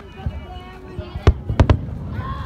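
Aerial fireworks shells bursting: one sharp bang about a second and a quarter in, then two more in quick succession near the end.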